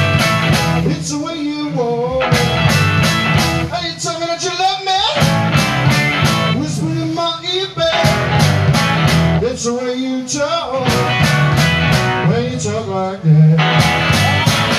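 Live blues-rock boogie band playing: electric guitars, bass and drums with steady cymbal hits, and a male lead singer's voice in phrases over it.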